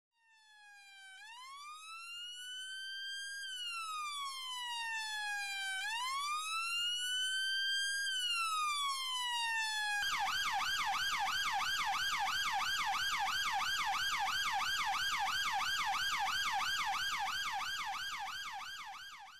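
Electronic siren fading in on a slow wail that rises and falls twice. About ten seconds in it switches to a fast yelp of about four sweeps a second.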